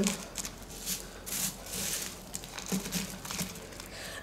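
Bark orchid potting mix rustling and crunching as fingers press it down into a small plastic pot, in a few irregular scratchy rustles.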